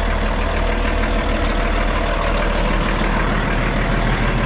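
Kenworth semi truck's diesel engine idling with a steady low rumble, heard close up.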